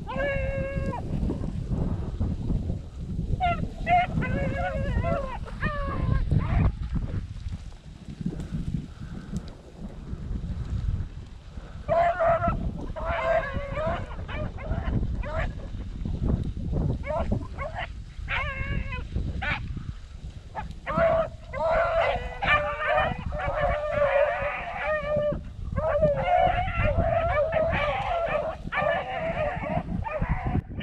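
A pack of beagles baying while running a cottontail rabbit: several hound voices giving tongue in bursts with short gaps, fuller and more continuous in the second half. The baying is the sign that the dogs are on the rabbit's track in full chase.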